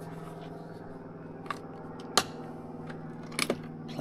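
A few short sharp clicks and taps, like small objects handled on a table: one just after two seconds and a quick pair about three and a half seconds in, over a steady low hum.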